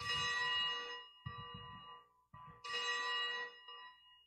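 Altar bells rung at the elevation of the chalice during the consecration. Three shaken peals in quick succession, the first and last the loudest, each ringing for about a second.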